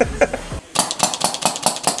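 Compressed-air paintball marker firing a rapid string of shots, about seven a second, starting about half a second in. A short burst of voice comes just before the shots.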